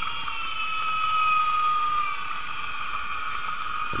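Underwater ambience picked up through a camera housing: a steady hiss with a thin high whine that slides a little lower in pitch.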